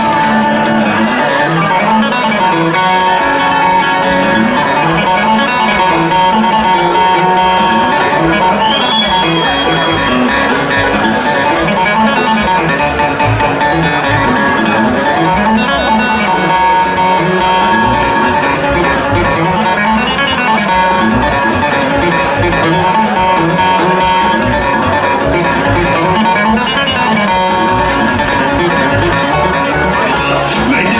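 A bluegrass string band playing an instrumental passage: an upright bass line rising and falling over and over under acoustic guitar and banjo.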